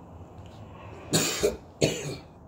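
A person coughing twice, two short harsh coughs about half a second apart in the second half.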